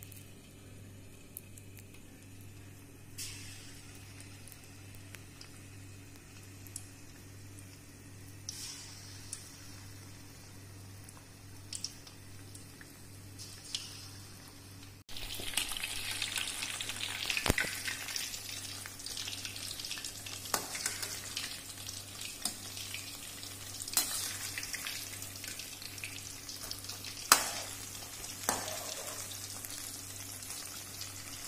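Banana fritter batter deep-frying in hot oil in a steel kadai, sizzling, faint at first and much louder and busier from about halfway through, over a low steady hum. A few sharp clicks come from the perforated steel skimmer against the pan.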